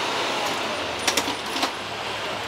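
Steady city street noise of passing traffic, with a few sharp clicks a little past a second in and again shortly after.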